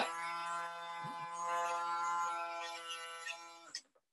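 Small electric motor of a plastic toy robot arm running as the arm is turned: a steady hum with even overtones that swells a little midway and fades out shortly before the end.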